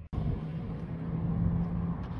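A motor vehicle's engine running: a low rumble with a steady hum that begins abruptly just after the start and fades near the end.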